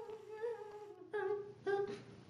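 A person humming: one soft, long, level note, then two short, louder hums in the second half.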